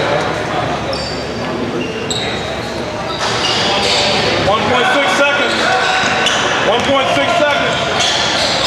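Gym sounds during a basketball game: voices of players and spectators talking, a basketball bouncing, and short high squeaks of sneakers on the hardwood court. The voices grow louder about three seconds in.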